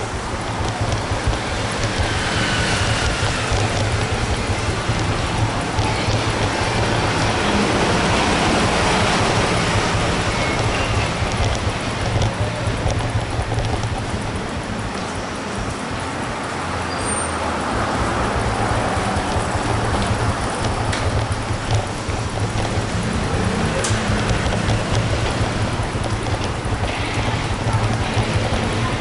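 Steady city traffic noise from the street beside a covered shopping arcade, a continuous low hum of passing vehicles, with faint music playing.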